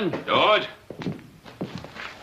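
A brief spoken exclamation at the start, then several faint, short thuds and knocks.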